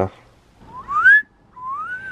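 A man whistling two notes: a quick upward glide, then a longer note that rises and falls away, like a wolf whistle.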